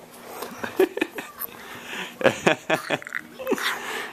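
Young child making animal noises: a string of short voiced yelps and cries with bending pitch.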